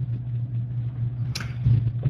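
Steady low electrical hum with faint hiss on an open microphone line, with a short burst of noise about two-thirds of the way through.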